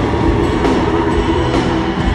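A live band playing loud in a large arena, heard from the stage, with the crowd's noise mixed in.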